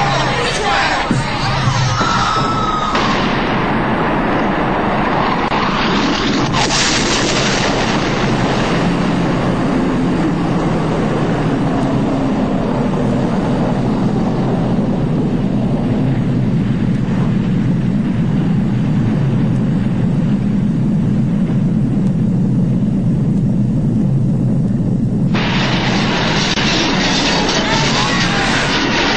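Film sound effects of a nuclear detonation, loud throughout: a sudden blast about six and a half seconds in, then a long deep rumble. Near the end a second sudden burst of noise cuts in.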